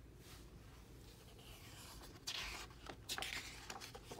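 A page of a hardcover picture book being turned by hand: after a near-quiet start, faint paper rustling and sliding begins a little past halfway, with a few soft clicks near the end.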